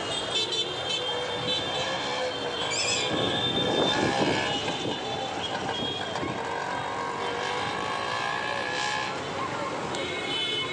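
Busy street ambience: motor traffic running, horns tooting and a crowd of people talking.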